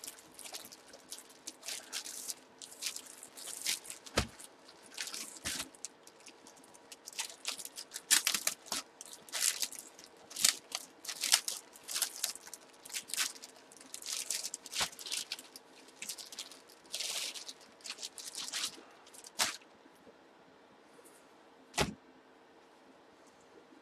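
Plastic poly bags crinkling and rustling in irregular bursts as bagged football jerseys are handled and unfolded, with a sharp knock near the end.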